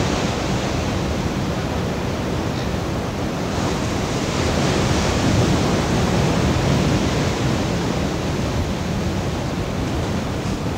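Steady wash of sea surf mixed with wind buffeting the microphone, swelling a little around the middle.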